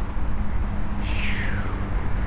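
Wind rumble on the microphone and rolling noise from a bicycle being ridden, with a faint whistle falling in pitch about a second in.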